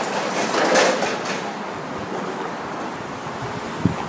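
A vehicle passing in the street: a steady rushing rumble that eases off after the first couple of seconds, with faint speech in the first second or so.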